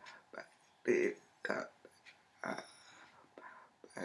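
Speech only: a woman talking in short phrases separated by pauses.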